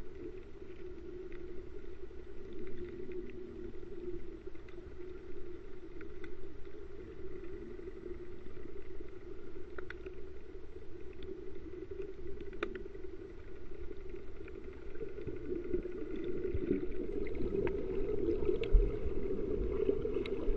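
Muffled underwater noise picked up through an action camera's waterproof housing: a steady low drone with a few faint, sharp clicks, growing slightly louder near the end, with a low bump shortly before the end.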